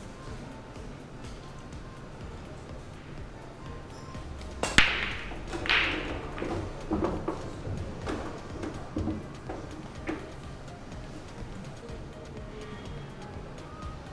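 Pool break shot: a sharp crack of the cue ball driving into the racked balls a little over four seconds in, then a scatter of ball-on-ball clacks and cushion knocks that thin out over the next five seconds.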